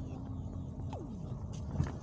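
Car driving slowly, a steady low rumble of engine and tyres heard from inside the cabin. A few light knocks come through, with a short falling tone about a second in.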